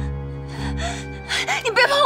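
Dramatic background music with steady low sustained notes. In the second half, a woman breaks into short, high-pitched gasping cries that are the loudest sound.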